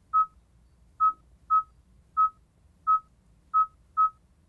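Kia UVO infotainment touchscreen giving a short key-press beep for each letter tapped on its on-screen keyboard: about seven identical single-pitch beeps at an uneven typing pace.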